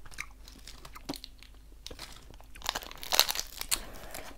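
Close-up chewing of a Hi-Chew green apple fruit chew, with small sticky mouth clicks. Near the end comes a brief louder run of plastic candy-wrapper crinkling.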